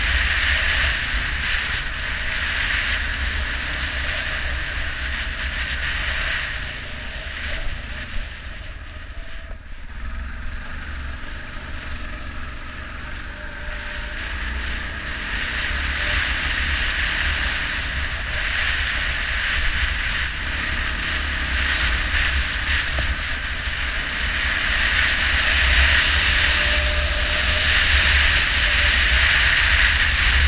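ATV riding along a rough dirt trail: engine and tyre noise buried under heavy wind buffeting on the camera microphone. It quietens for a few seconds about a quarter of the way in, then grows louder near the end.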